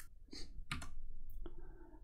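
A handful of light, irregular clicks and taps from thin flex ribbon cables (MacBook Air keyboard/trackpad bridge cables) being handled and compared between the fingers.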